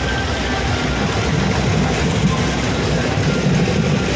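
Loud music from a DJ truck's sound system, heavy on bass.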